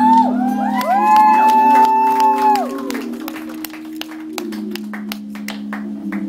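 A live band holding a low sustained chord while the crowd cheers, with several high whoops in the first three seconds and scattered claps.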